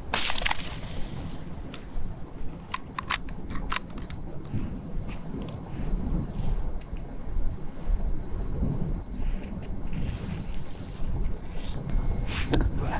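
A single hunting-rifle shot with a short echoing tail, followed about three seconds later by a few sharp clicks. A low, steady rumble of wind noise runs underneath.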